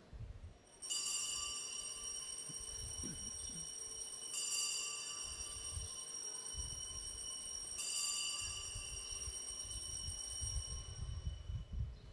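Altar bells (sanctus bells) rung in three sustained peals about three and a half seconds apart, bright and high, signalling the elevation of the chalice after the consecration at Mass.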